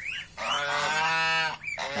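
Domestic geese honking: a short rising call at the start, then one long drawn-out honk lasting about a second, and another short call near the end.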